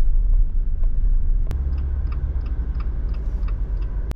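Road and engine noise heard from inside a car driving through city streets: a steady low rumble, with a single sharp click about a second and a half in.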